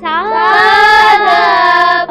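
A child singing one long held note of a Carnatic swara exercise, sliding up into pitch at the start, over a steady low drone.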